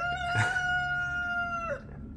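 One long animal call held on a single steady note, sliding up at its start and dropping away near the end, with a brief knock shortly after it begins.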